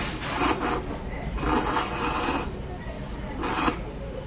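A person slurping thick udon noodles: three slurps, a short one, a longer one lasting about a second, and a short one near the end.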